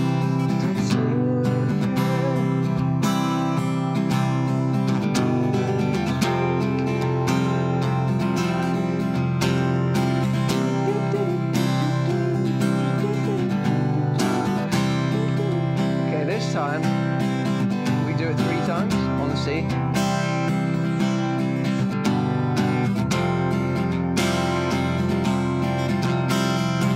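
Acoustic guitar strummed in a steady down, up-up, down, down, down-up pattern, changing between C, G and Fsus chords.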